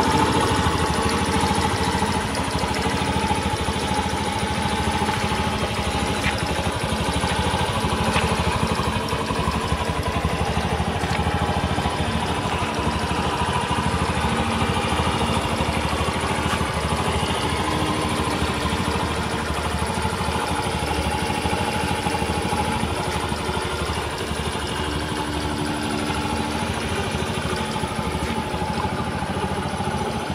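Honda Little Cub 50's 49 cc four-stroke single-cylinder engine idling steadily.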